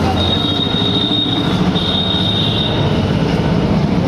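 Three-piston HTP pressure-washer pump, belt-driven by a single-phase electric motor, running steadily with the spray of its water jet, pressure turned down at the regulator valve. A dense even mechanical clatter with a thin high whine that comes and goes.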